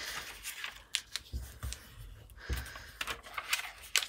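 A sheet of tracing paper rustling and crinkling as it is folded and pressed flat by hand, with a few short, sharp crackles.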